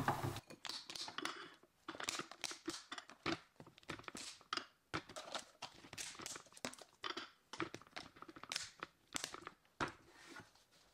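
Plastic snap-lock lids being pressed and clipped onto glass food-storage containers, a soft, irregular run of short clicks and crackles, with the lidded containers knocking lightly as they are set down and stacked.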